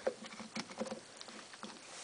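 Faint, scattered light taps and handling noises from a hand working an iPod touch seated in its dock, mostly in the first second.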